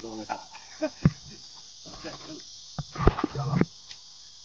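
A steady, high-pitched insect chorus buzzing outdoors in summer. A few brief knocks and short snatches of voice sound over it, the loudest burst coming about three seconds in.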